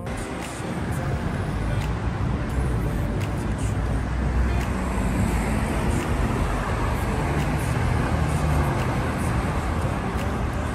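Street traffic noise: cars driving past over a steady low rumble.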